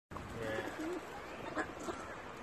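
Feral pigeons cooing faintly, with a couple of short clicks in the second half.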